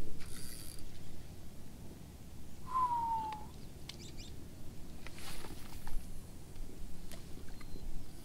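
A line cast from a spinning rod into a lake: faint swishes and rustles with a few light clicks from the reel. One short whistle falls in pitch about three seconds in.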